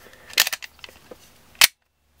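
Glock 19 Gen 5 trigger dry-fired: a quick cluster of clicks as the striker breaks about half a second in, then a single sharper click just before the end.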